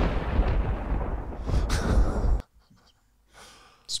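Thunderclap sound effect: a loud bang with a deep rumble that cuts off suddenly about two and a half seconds in.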